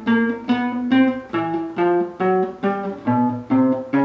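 Classical guitar played one note at a time in a slow chromatic four-finger exercise (fingers 1-2-3-4 fret by fret), each note plucked and left ringing briefly, about two to three notes a second in small stepwise pitch changes.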